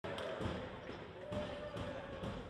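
A basketball bouncing on a sports-hall floor, a thud about every half second, over voices echoing in the hall and a steady hum.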